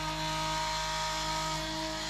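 Electric macerator pump running steadily with an even motor hum, grinding the black tank's solids and pumping the waste out through a hose.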